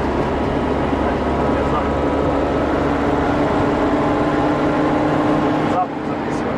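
Engine and road noise of a moving vehicle, heard from inside it: a dense steady rumble with an engine hum that rises slightly in pitch through the second half. The sound cuts off sharply just before the end.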